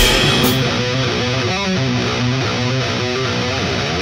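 Heavy metal intro: distorted electric guitar chords ring on, opened by two cymbal crashes in the first half second, with the drums otherwise sparse.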